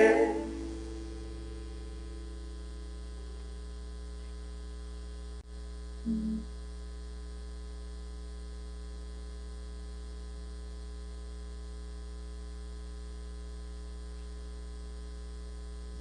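Steady electrical mains hum with its row of harmonics, left in the sound feed as the choir's singing dies away in the first half second. A short low sound comes about six seconds in.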